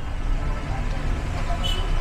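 Steady low background rumble with faint voices behind it, and no distinct event.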